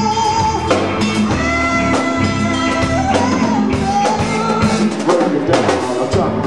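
Rock band playing an instrumental break: drum kit and guitars, with a lead line of long held notes that bend and shift in pitch.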